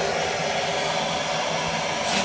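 Handheld gas blowtorch hissing steadily, its flame played into dry kindling in a wood cookstove's firebox to light the fire.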